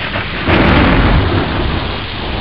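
Thunder sound effect: a loud, noisy rumble with a hiss over it, swelling about half a second in and rolling on.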